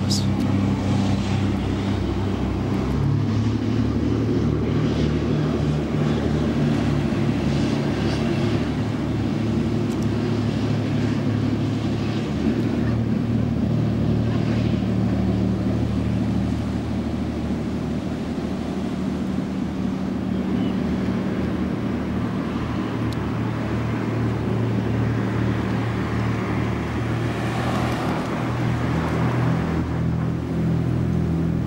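Lifeboat's diesel engines running steadily as it heads out to sea: a low drone whose pitch shifts a few times as the revs change, over a wash of surf.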